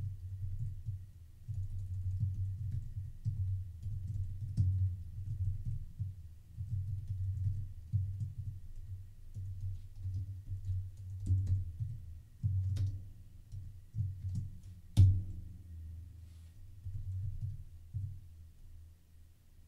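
Typing on a computer keyboard: an irregular run of dull key thumps with light clicks, and one much louder keystroke about fifteen seconds in.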